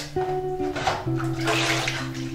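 Water running and splashing into a stainless steel kitchen sink as dishes and a steel pot are rinsed, heavier in the second half, over background guitar music.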